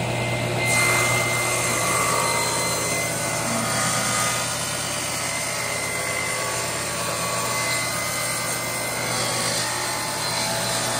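Table saw running, its blade cutting a notch along the length of a wooden frame strip as it is fed through. The steady motor hum is joined by the cutting noise under a second in, which then carries on evenly.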